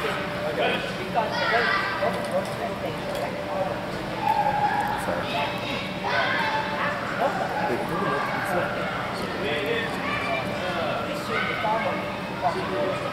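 Indistinct voices of several people talking and calling out in a large indoor sports arena.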